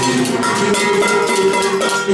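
Music with a steady beat, with children striking kitchen utensils such as tin cans, cups and spoons as makeshift percussion. There are sharp clanking hits about four a second.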